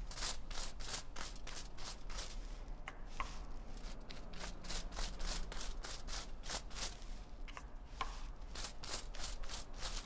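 Quick rhythmic scratching strokes, about four a second, of a stylist's tools working a section of hair against foil during foil highlighting. There is a short lull about seven seconds in.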